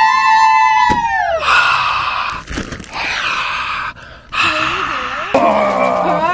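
Excited whooping and screaming voices: a long high 'woo' held for about a second and a half before falling off, then a rough, harsh scream for about two seconds, a brief lull near four seconds in, then more yelling.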